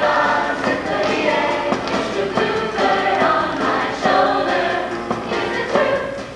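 Large mixed show choir of men and women singing together in a sustained sung passage.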